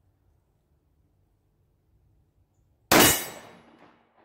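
A single shot from a PSA Dagger 9mm compact pistol firing 115-grain full metal jacket range ammunition: one sharp, loud report about three seconds in, ringing out and fading over most of a second.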